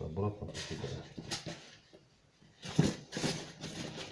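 Cardboard, styrofoam and crumpled newspaper packing being handled in a box: rustling, scraping and a few light knocks, with a quieter pause about halfway through. A man's low voice is mixed in at the start and again near three seconds.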